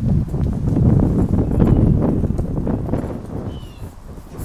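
Footsteps climbing the porch steps and crossing the porch floor, a run of heavy knocks amid low rumbling noise that fades near the end.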